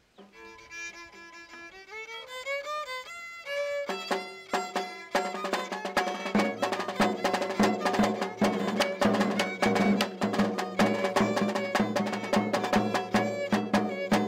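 Violin playing a folk melody alone for the first few seconds, then joined by lower sustained notes and a run of sharp rhythmic strokes.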